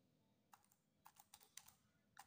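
Faint clicks of keys being pressed one after another on an Orpat OT-512GT desktop calculator, about seven presses in quick succession from about half a second in, as a division is keyed in.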